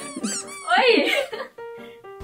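Light background music with quick high-pitched squeaky glides, and a loud, high, excited squeal about halfway through.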